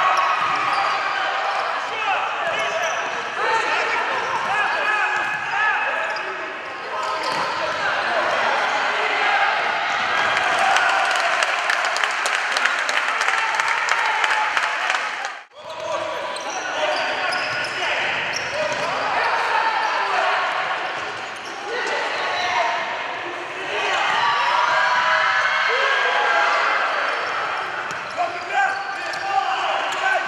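Indoor futsal match sound in a sports hall: the ball being kicked and bouncing on the wooden court, with voices talking over the play. The sound drops out briefly about halfway through at a cut.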